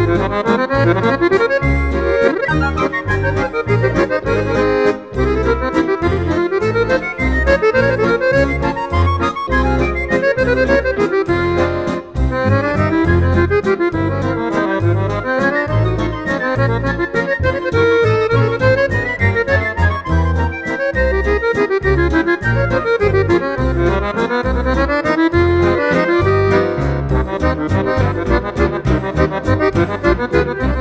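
Waltz played on a Roland FR-7xb digital bayan (a button accordion) with synthesizer backing. A regular waltz pulse sounds in the bass under a melody that runs up and down in quick figures, with a brief break about twelve seconds in.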